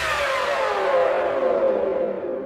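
Electronic backing track ending on a downward synth sweep: a cluster of pitched tones glides down in pitch with no beat under it and fades out near the end.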